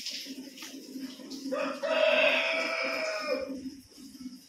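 A rooster crows once: one long call of about two seconds in the middle, the loudest sound here. Under it runs the steady rhythmic squirting of hand-milking into a metal pail.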